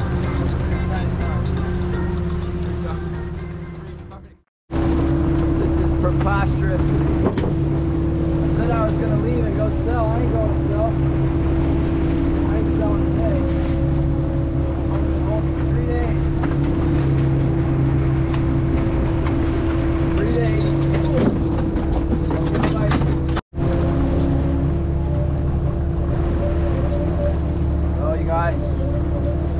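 A fishing boat's engine runs with a steady hum. The sound fades out about four seconds in and comes back at a cut, with a short dropout near the end. Brief wavering high sounds rise over the hum now and then.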